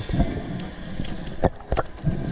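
Muffled underwater rumble of water moving past an action camera in its housing, with two sharp clicks in the second half.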